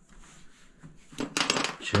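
Loose metal screws and small plastic pieces clinking and rattling against the metal top of a water heater as a hand sorts through them, a quick run of clinks in the second half.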